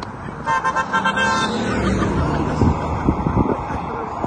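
A car horn sounding in a quick run of short toots about half a second in, lasting about a second, followed by the sound of a passing vehicle.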